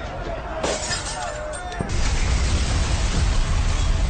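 A sharp crash of breaking glass about half a second in. Near two seconds in, a loud, dense noise with a heavy low rumble takes over and continues.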